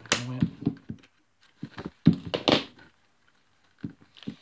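Hand-sewing a leather holster toe plug: short bursts of handling sound as the needle is shoved through the leather and the thread drawn through. They come in two bunches in the first three seconds, with one brief sound near the end.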